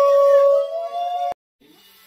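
Several conch shells (shankha) blown together in long held, slightly wavering notes, cut off sharply a little over a second in.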